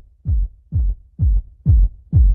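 Music: the intro of a pop track, a lone deep electronic kick drum thumping about twice a second, each hit dropping in pitch.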